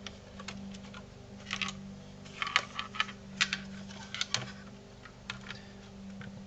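Scattered light plastic clicks and knocks as a laptop motherboard is handled and turned over in its plastic base, with a faint steady hum underneath.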